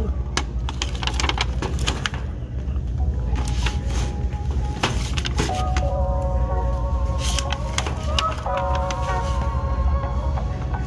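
Hands handling a shrink-wrapped cardboard box of washi tape rolls: scattered clicks and crinkles of plastic film and cardboard, over a steady low hum. Faint music with held notes comes in about halfway through.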